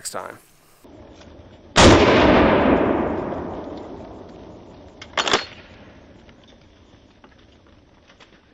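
A single 12-gauge pump-action shotgun shot, one loud report whose echo fades away over a couple of seconds. About three and a half seconds later comes a shorter, quieter sharp double snap.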